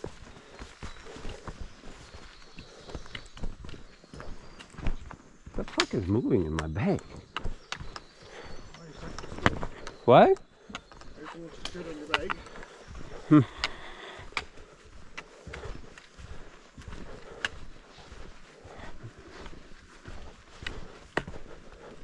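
Footsteps and trekking-pole tips striking a rocky dirt trail make a steady run of light clicks and crunches. A few brief voice sounds come in the middle, one of them rising sharply in pitch.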